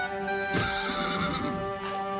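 A horse whinnying once, starting about half a second in and lasting about a second, over steady background music.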